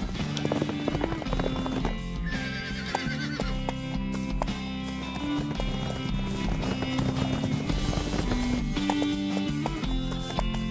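Horse hoofbeats and a horse whinnying, a wavering call about two seconds in, over steady background music. These are cartoon sound effects for horses galloping.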